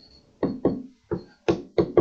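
Stylus tapping and scratching on a writing tablet as two short numbers are written: about eight short, sharp, uneven taps in two seconds.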